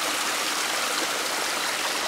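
Shallow rocky stream running steadily over and between boulders, an even, continuous sound of water.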